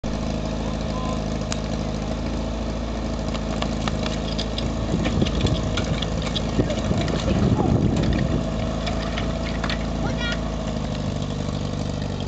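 Portable fire-pump engine idling steadily, with metal clanks and knocks through the middle as suction hoses are coupled to the pump.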